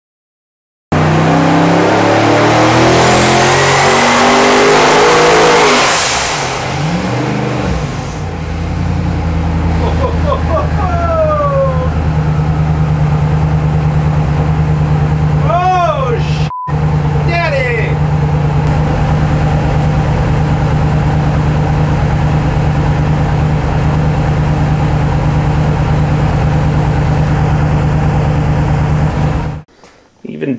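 Twin-turbocharged 454-cubic-inch LS V8 running on an engine dyno. It revs up for about five seconds, drops back, then runs at a steady speed with a brief break partway through, and cuts off just before the end.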